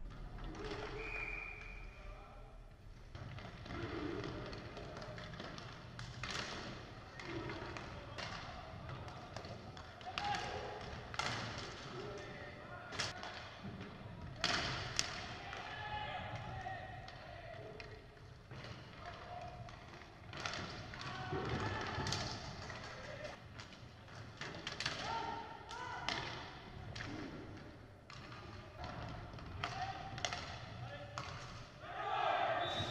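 Live inline hockey game sound in an echoing sports hall: repeated sharp clacks of sticks and puck on the wooden floor, mixed with indistinct shouts from players and onlookers.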